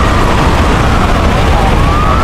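Wailing emergency-vehicle siren, its pitch falling at the start and beginning to rise again near the end, over a loud steady low rumble.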